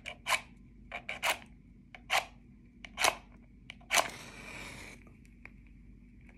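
Wooden matchstick struck repeatedly against the striker strip on the side of a matchbox: several short scrapes, then a loud strike about four seconds in as the match catches, followed by about a second of hiss as the head flares.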